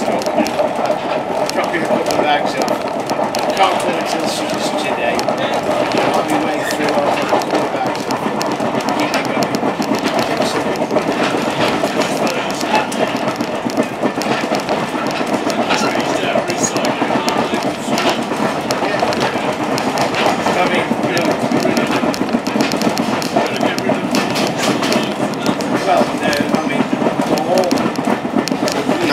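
A train running along the line, heard from inside a carriage: a steady rumble of wheels on rail, broken by frequent small clicks and knocks.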